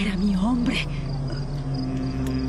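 A woman's sobbing cry, wavering in pitch and dying away within the first second, over steady cricket chirping.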